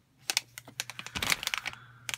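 Metallized anti-static bag crinkling as a network card inside it is handled: a run of sharp crackles and clicks, thickest a little past the middle.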